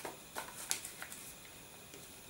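A sheet of paper rustling faintly as a paper plane's wing is folded down by hand, with about four soft crinkles in the first second.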